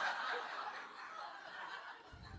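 Audience laughter in a hall, dying away.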